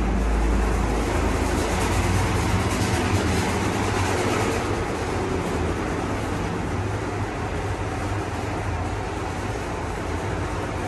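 Ride noise inside a Montgomery Kone hydraulic elevator car travelling down: a steady rumble and hiss with a low hum, a little louder in the first half and easing off as the car slows toward the floor. The cab's ventilation fan runs throughout.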